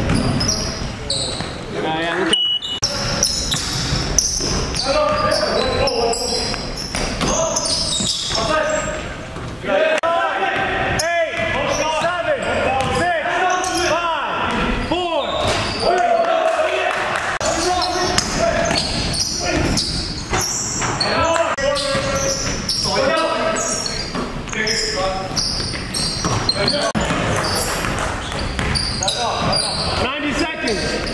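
Basketball game in a gym: a basketball bouncing on the hardwood court again and again, mixed with the players' voices.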